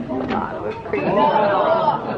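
Several people talking at once in a large room, with one voice standing out louder in the second half.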